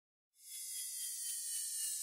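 Faint, airy electronic hiss with a few thin whistle-like tones slowly falling in pitch, starting about half a second in after dead silence.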